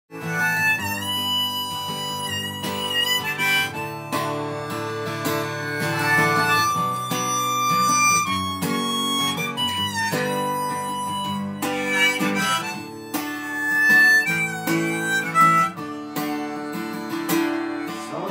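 Harmonica playing a melody with sustained, sometimes sliding notes, accompanied by an acoustic guitar.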